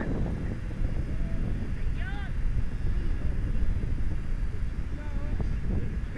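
Players shouting across a soccer pitch: a single rising-and-falling call about two seconds in and a few shorter calls near the end, over a steady low rumble.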